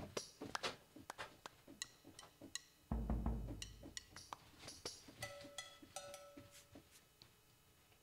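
Faint drum samples from the Kontakt 7 Studio Drums kit played back: a scatter of short, sharp percussion hits, a deep thump about three seconds in, and a few short ringing pitched hits between about five and seven seconds.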